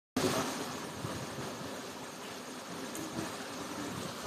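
Water running in a small open irrigation channel: a steady, even rushing noise.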